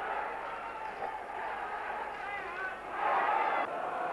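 Noise of a large football crowd on the terraces, a steady hubbub that swells for under a second about three seconds in.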